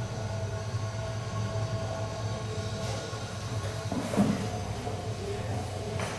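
A steady low drone with faint sustained tones above it, and a single brief thud about four seconds in.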